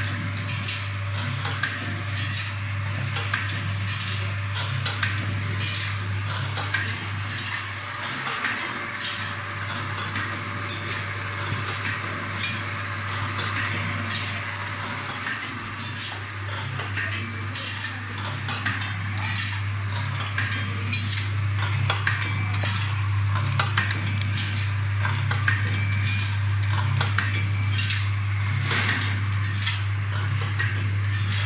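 Automatic counting and packing machine running: its vibratory bowl feeder hums steadily while small hard pieces rattle and clink in the stainless steel bowl. Regular sharp clacks come from the machine throughout.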